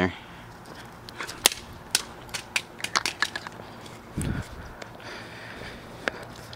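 Irregular sharp clicks and taps of plastic as a smashed Casio fx-7700GE graphing calculator's cracked case is handled, followed by a brief low thump about four seconds in.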